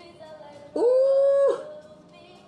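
A voice holding one high note for under a second, scooping sharply up into it and then holding steady, much louder than the quiet backing music around it.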